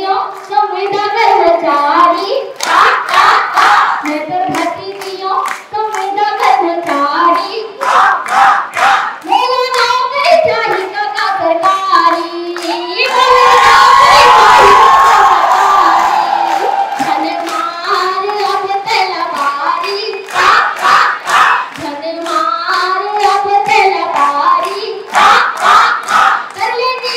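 A woman singing a song through a microphone and PA loudspeakers while a crowd claps along in rhythm. About halfway through, the crowd noise swells loudly for a few seconds over the singing.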